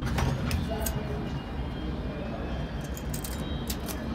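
Steady rumbling background noise with faint voices in it.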